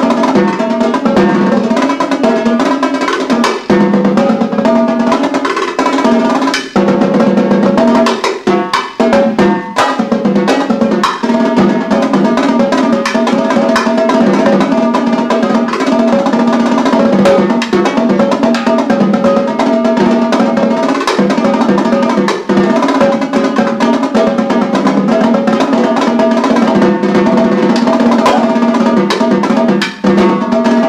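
Marching tenor drums (quads) played in a fast solo: rapid rolls and runs of strokes moving around the differently pitched drums. About eight to ten seconds in, the rolls give way briefly to separate accented strokes with short gaps between them.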